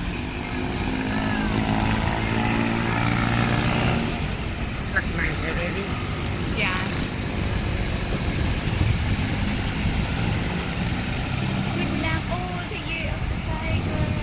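Road traffic: vehicle engines running past. One steady engine drone is loudest in the first few seconds and another comes around the middle. Voices talk faintly now and then.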